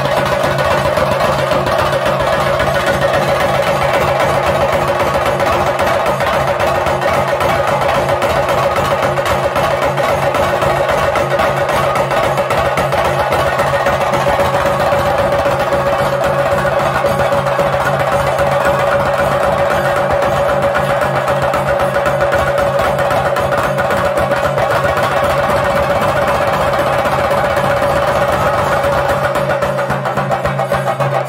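Chenda drums beaten with curved sticks in a dense, fast, unbroken rhythm, with a reed pipe holding a steady high note over them: traditional ritual percussion music accompanying a Theyyam dance.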